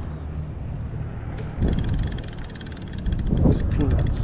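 Conventional fishing reel being cranked to wind in line, giving a rapid, even clicking that starts about one and a half seconds in, over a low rumble of wind on the microphone.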